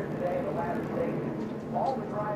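Television race-broadcast sound: the steady noise of stock cars running on the track, with faint talk under it.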